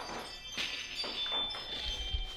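Faint high, bell-like chiming tones with a light shuffling noise beneath.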